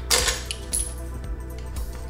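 Metal clinks from a hand tool working a stainless steel handlebar-mount bolt: one sharp clink right at the start, then a few lighter ticks and a brief high metallic ring.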